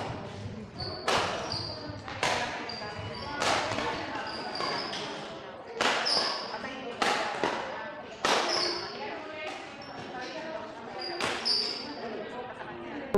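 Badminton rackets striking a shuttlecock in a rally: about ten sharp smacks, roughly one a second, each ringing briefly in a large hall. Short high squeaks come between the strokes.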